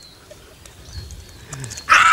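Quiet background, then near the end a loud, high-pitched startled shriek from a person.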